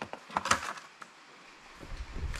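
A few light knocks and clicks of a plastic number plate being handled against a block wall, with a low rumble of handling noise near the end.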